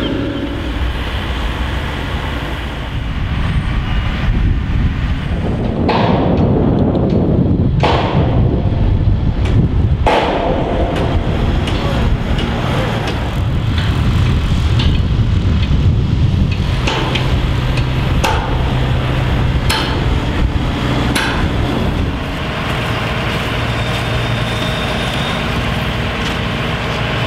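Construction site noise: machinery engines running with a steady low rumble, broken by a series of sharp metallic knocks and clanks, the loudest in the first half.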